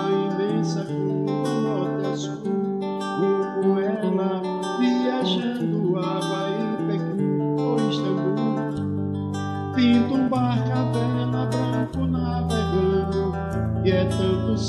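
Nylon-string classical acoustic guitar strummed and picked in a steady accompaniment, its bass notes stepping lower about nine and twelve seconds in, with a man singing along.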